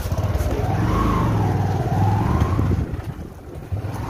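Bajaj Discover motorcycle's single-cylinder engine running as it pulls away and rides off, with wind on the microphone; the engine eases off about three seconds in.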